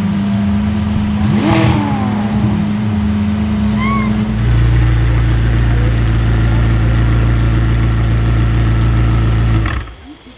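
A Lamborghini Aventador's V12 idling with a steady note; about four seconds in it gives way abruptly to the louder, deeper steady idle of a modified McLaren 600LT's twin-turbo V8 through its aftermarket Fi exhaust, which stops just before the end.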